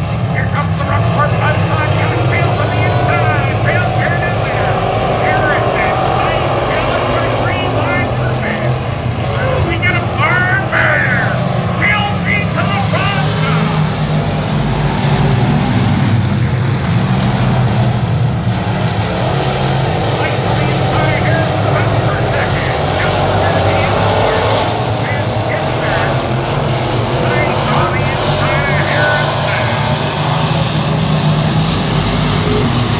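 A field of pure stock race cars running laps together, their engines a steady drone. People are talking close by.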